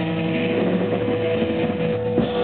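Live rock band holding a steady, droning distorted electric guitar note over a sustained bass tone.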